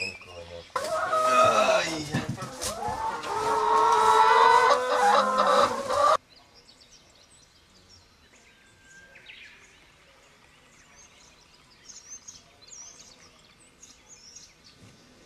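Chickens clucking and squawking loudly for about five seconds, cut off suddenly, followed by faint bird chirps.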